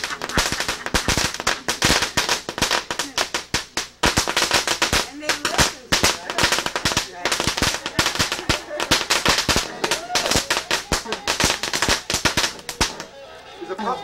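A string of firecrackers going off: a rapid, irregular run of sharp cracks, several to many a second, that stops about a second before the end.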